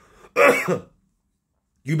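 A man's single short cough, clearing his throat, lasting about half a second.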